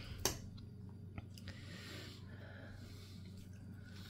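Quiet room with a low steady hum; a fork clicks faintly against a plate and a man chews a mouthful of soft cooked carrots.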